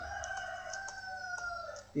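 A rooster crowing: one long call lasting most of two seconds, its pitch easing down toward the end. A few faint keyboard clicks sound over it.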